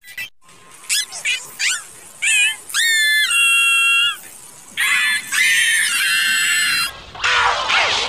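Heavily pitch-shifted, effects-processed cartoon voice clip, squeaky and high: a run of short sliding syllables about a second in, then long held notes around three and five seconds in.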